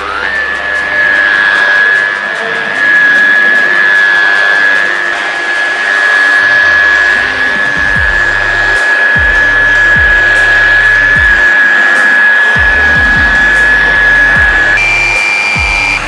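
Electric rotary polisher with a wool pad running on car paint: a steady high motor whine that spins up at the start, holds level while buffing, and steps up in pitch near the end. Background music plays underneath.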